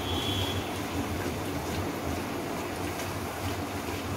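Papdi, flat rounds of maida dough, deep-frying in medium-hot oil: a steady sizzle and bubble as the oil cooks them crisp.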